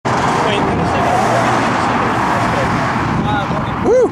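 Loud, steady road-traffic noise from vehicles on the bridge, easing off near the end, with voices talking over it and one short rising-and-falling vocal sound just before the end.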